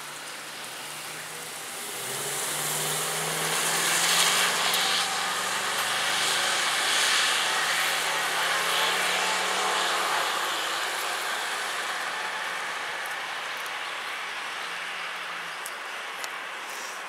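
An ambulance van's engine pulls away and accelerates down the road. The engine and tyre noise swells about two seconds in, is loudest a few seconds later, then fades slowly as the van drives off.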